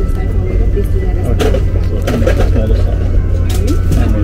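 Steady low hum of an Airbus A380 cabin, with a plastic bag rustling as it is handled: crisp rustles about one and a half seconds in and again near the end. A voice is heard in the middle.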